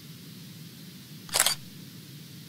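Outro sound effect: a steady low hum and hiss, with a short, loud camera-shutter click about one and a half seconds in.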